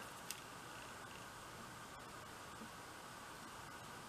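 Near silence: faint steady room hiss, with one faint tick a moment after the start.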